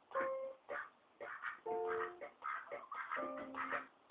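Hanging electronic baby toy playing short, plucked-sounding tune snippets in several start-stop bursts, with clicks between them, set off by a duck pecking its buttons.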